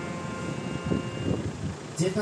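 Harmonium holding a soft chord in a pause in the singing, its tones dying away a little past halfway, over a low rumble of background noise.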